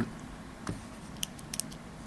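A few light clicks and ticks from a pen being handled over paper, against faint room tone.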